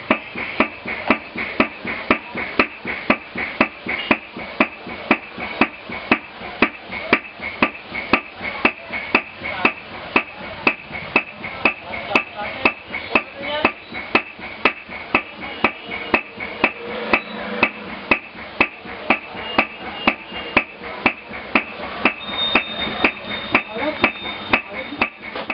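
Hand hammering of gold leaf packed between papers in a leather wallet, in a steady even rhythm of about two blows a second.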